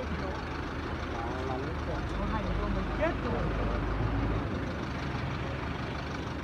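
A vehicle engine running steadily at idle with street traffic around it, and several people talking quietly in the background.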